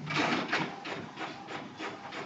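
A quick run of short scratching strokes, a few each second.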